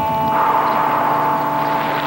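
A Chevrolet Avalanche pickup truck driving past, its road and engine noise swelling about a third of a second in, over steady held music chords.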